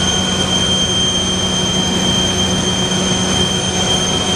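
Enclosed gas turbines of a combined heat and power plant running: a loud, steady roar with two constant high-pitched whines and a low hum.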